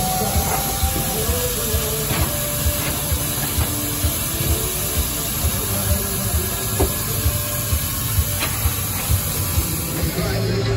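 Steady steam hiss from a Fowler showman's road locomotive, over a regular low thumping about twice a second and faint snatches of music.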